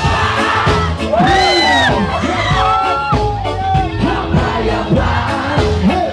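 Reggae band playing live, with vocals gliding up and down over the music and a crowd's voices beneath.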